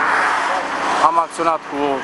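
A steady, loud rushing noise that eases a little about half a second in, with a man's voice talking over it from about a second in.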